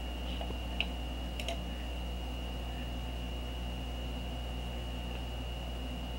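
Steady electrical hum with a thin, high steady whine: background noise of a computer recording setup's microphone, with two faint clicks about one second in.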